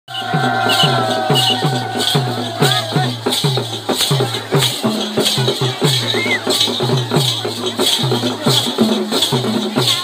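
Folk dance music: a drum beaten in a steady rhythm of about two strokes a second, each stroke sliding down in pitch, with rattles jingling on the beats. A wavering high tone sounds over the first three seconds, and crowd voices are underneath.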